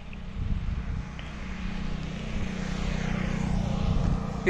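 Engine drone of a motor vehicle, growing gradually louder as it approaches, over a low, uneven rumble.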